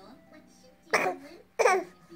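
A baby gives two short, loud, harsh vocal outbursts, like cough-like shouts: one about a second in and another just over half a second later.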